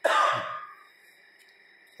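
A man's single short cough.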